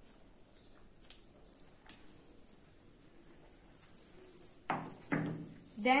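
Faint sounds of hair being worked with a paddle brush and a hair clip: a few small clicks, then two short rustles near the end.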